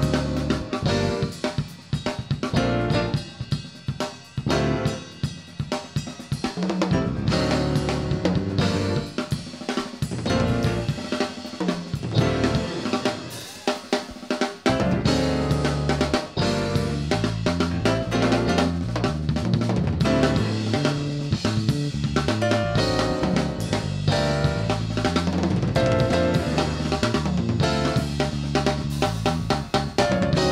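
Live drum solo on a full rock drum kit: fast snare, rimshot and bass-drum patterns with hi-hat and cymbal crashes. About halfway through, a line of low pitched bass notes comes in under the drums.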